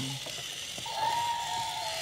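A steady, whistle-like high tone lasting about a second, starting near the middle, over a faint steady hiss.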